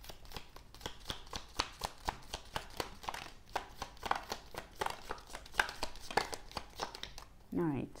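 Small round oracle cards being drawn one at a time from a deck in the hand and laid down on a table: a quick, uneven run of light card flicks and clicks. A woman's voice begins just before the end.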